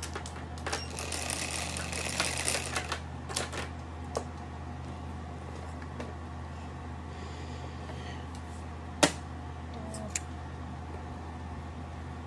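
Mahjong tiles clicking against each other as a hand of tiles is rearranged: a quick clatter of clicks in the first few seconds. Then a few single sharp clacks of tiles set down on the table, the loudest about nine seconds in, over a steady low hum.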